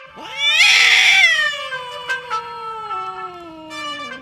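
A cat's long drawn-out meow, rising sharply at first, loudest for about a second, then sliding slowly down in pitch for about three seconds. Background music comes back in near the end.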